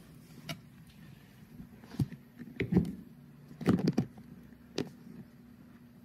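Scattered light metallic clicks and clinks of a galvanized nut and washers being handled and a nut threaded finger-tight onto a carriage bolt, over a steady low hum.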